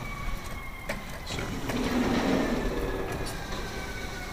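Claw machine's motor whining with a slowly falling pitch as the claw is moved, with a low hum that swells and fades in the middle.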